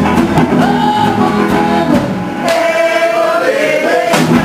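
Live blues band playing electric guitar, bass guitar and drums with singing. About two seconds in, the bass and drums drop out and a long note is held alone. The full band comes back in at the very end.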